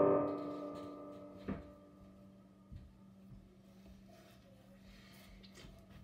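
The last chord of a piece on a digital piano fading out over about two seconds, followed by a few soft knocks and a faint steady hum.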